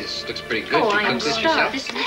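Several voices talking and laughing over one another, indistinct, with background music underneath.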